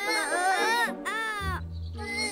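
A cat meowing twice, each call rising and falling in pitch, over background music.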